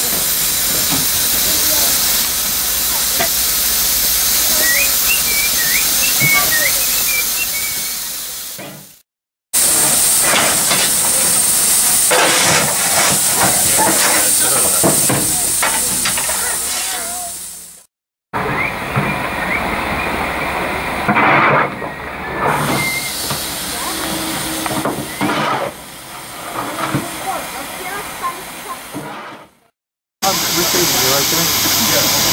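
Steam hissing steadily from a GWR Manor class 4-6-0 steam locomotive. After a break about nine seconds in, a coal shovel scrapes and clatters as coal is fired into the engine's firebox. After a second break about eighteen seconds in, steam hisses again with irregular clanks.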